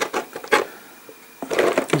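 Small paint pots knocking and clicking against each other and the table while a pot of Nuln Oil wash is searched for among them. There are a few sharp clicks at the start, a short lull, then a quicker rattle of clicks near the end.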